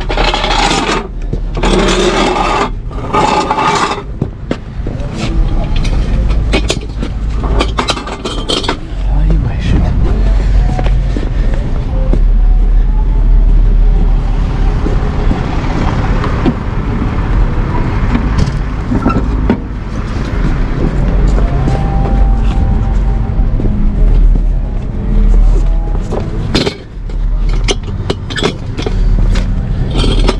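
Metal tow gear being handled: clanks, knocks and scraping as a tow bar and wheel dollies are carried and set against a car's wheel, most frequent in the first third. A steady low rumble runs underneath.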